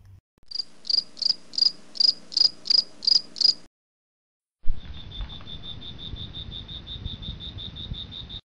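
Crickets chirping in two separate runs: first about ten evenly spaced high chirps, roughly three a second, then after a short break a faster, slightly lower trill of about eight pulses a second over a low rumble.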